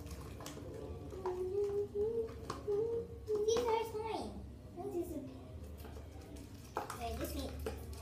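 A young girl's wordless voice in held, wavering tones, sliding down in pitch about four seconds in, over light clicks and scrapes of thin stirring sticks working slime in small plastic containers.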